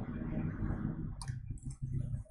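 A computer mouse click about a second in while a line is drawn on screen, over a low steady background hum.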